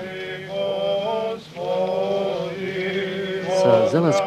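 Orthodox liturgical chant sung by men's voices: a troparion held on long, sustained notes that step from pitch to pitch, with a short pause for breath about one and a half seconds in.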